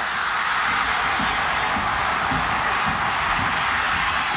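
Stadium crowd cheering in a steady roar during a long fumble return.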